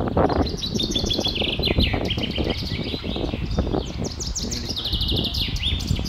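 Small birds singing in rapid, repeated chirps and trills, several notes a second and sometimes overlapping, over a low rumble of wind on the microphone.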